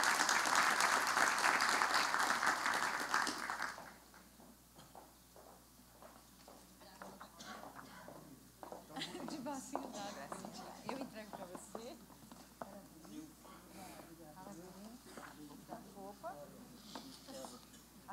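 Audience applause that dies away after about four seconds, followed by faint, indistinct voices.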